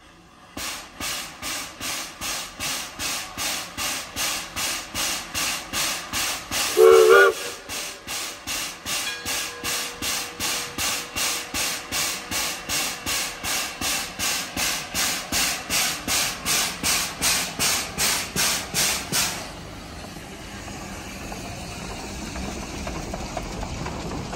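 Shay geared steam locomotive pulling away with a passenger train, its exhaust chuffing about twice a second, with one short whistle toot about seven seconds in. The chuffing stops after about 19 seconds, leaving the steady sound of the passenger cars rolling past.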